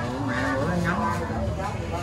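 Background voices of several men talking over a steady low rumble of street traffic.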